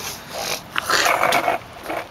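A person's raspy, harsh hacking cough: a short burst, then a rougher one lasting about a second.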